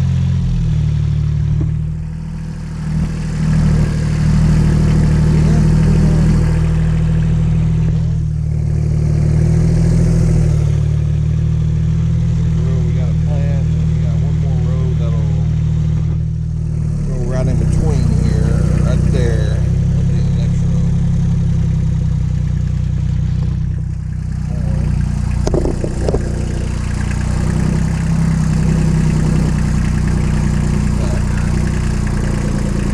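Small farm tractor engine running steadily as the tractor drives over a tilled field, its note dipping and changing pitch a few times.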